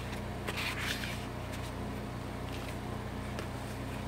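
Paper journal pages and cards being handled and turned, with a rustle about half a second in and a few light paper ticks after, over a steady low hum.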